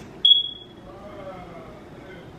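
A single short high-pitched beep about a quarter second in, fading out within about half a second, followed by a faint voice.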